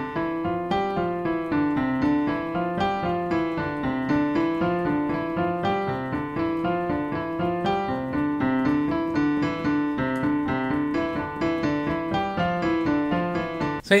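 Digital piano on a piano sound, played fast with both hands: a rapid, unbroken stream of notes over a lower repeating line.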